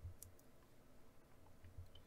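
Near silence: quiet room tone with a few faint clicks from a computer mouse, two close together near the start and one near the end.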